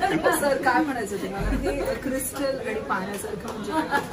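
Several people talking over one another in lively, casual chatter. About a second and a half in there is a brief low rumble of a handheld microphone being handled.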